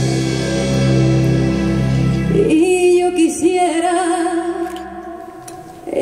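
Live copla: a woman singing long held notes with vibrato over piano accompaniment. A sustained low chord carries the first couple of seconds, and the music softens shortly before the end.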